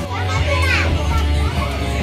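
Young children's excited voices and squeals over music with a steady bass line.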